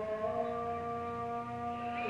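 A horn sounding one long, steady note, held for a little over two seconds.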